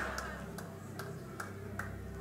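Faint room tone: a steady low hum with a few faint, irregular ticks.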